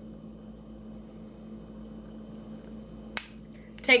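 Quiet room tone with a steady low hum, broken about three seconds in by a single sharp click.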